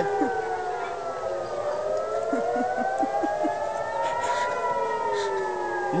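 Civil-defence air-raid siren wailing, its pitch sliding slowly down, rising for about three seconds and falling again: the warning for an incoming rocket attack.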